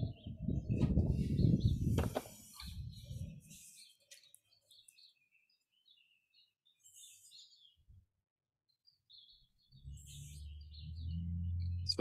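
Faint, scattered bird chirps coming through a video-call microphone, over near silence. A low, uneven noise fills the first two seconds, and a steady low hum comes in near the end.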